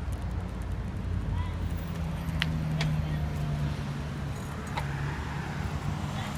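Road traffic on a city street: cars running past with a steady low rumble, an engine hum holding through the middle, and a few sharp clicks.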